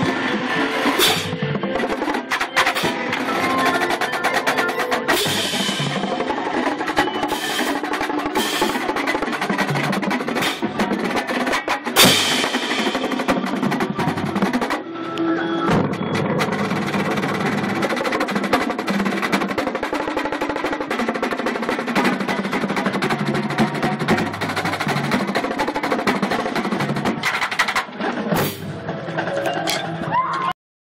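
A marching drumline playing: a row of Pearl marching bass drums with snares and tenor drums, in dense, continuous rhythms and rolls, with a loud accented hit about twelve seconds in.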